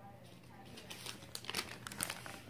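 Faint crinkling of a paper till receipt being handled, quiet at first and then a few sharp crackles in the second half.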